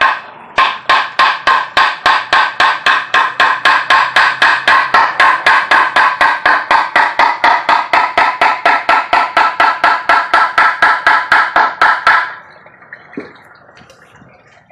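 Claw hammer driving a nail into a wooden board, fast steady blows at about four a second, each with a metallic ring. The hammering pauses briefly right at the start and stops near the end.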